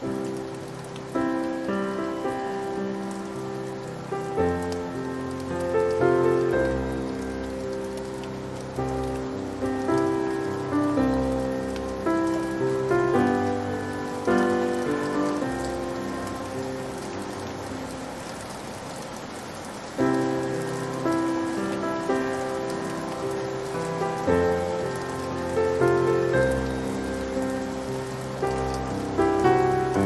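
Slow, sad solo piano melody of single struck notes and chords, each dying away, over a steady patter of rain. The piano thins out near the middle, then a new phrase begins with a louder chord about two-thirds of the way in.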